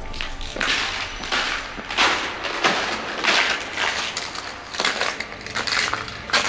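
Footsteps crunching over an ice-covered mine floor, about one step every two-thirds of a second.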